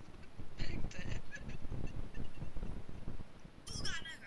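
A person's voice in short, wordless bursts, the loudest a sharp falling cry near the end, over a steady low rumble.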